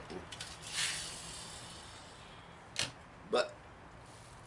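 A small wind-up toy truck's spring motor whirring briefly and running down about a second in. A sharp click follows near the end, then a short hiccup-like vocal sound.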